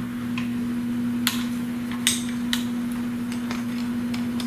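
A steady low electrical hum with several light clicks and taps from a camcorder being handled on a small tripod.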